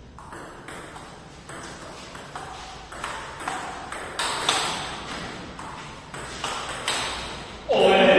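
Table tennis rally: the celluloid ball clicks off the bats and the table about twice a second, each hit echoing in a bare hall. A loud voice cuts in near the end.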